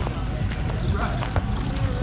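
Cycling shoe cleats clicking unevenly on pavement as triathletes walk their bikes in, with faint voices behind.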